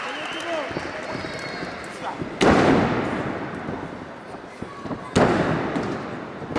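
Two loud slams of wrestlers' bodies hitting the wrestling ring mat, about two and a half seconds in and again near the end, each ringing on briefly through the hall. Crowd voices and shouts go on underneath.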